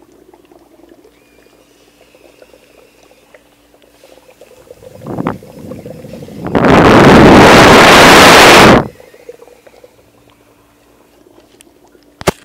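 Dry ice bubbling faintly in hot water inside a lidded cup, then a loud hiss of carbon dioxide fog jetting from a small hole in the lid. The hiss swells about five seconds in, runs for about two seconds so loud it overloads the recording, and cuts off suddenly.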